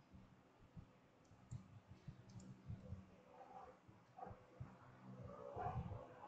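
Near silence with faint, scattered clicks.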